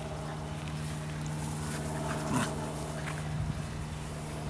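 A Scottish terrier and a Sealyham terrier tugging at a rope toy together, with brief dog vocal sounds about two seconds in and again around three seconds, over a steady low hum.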